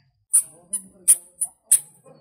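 Footsteps of sandals on stone paving: about five short, sharp steps at an easy walking pace.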